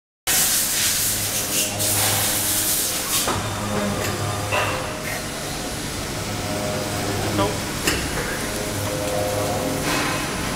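Sachman T10HS fixed-bed milling machine running with a steady hum. A loud hiss lasts about the first three seconds, and a few sharp clicks follow at intervals.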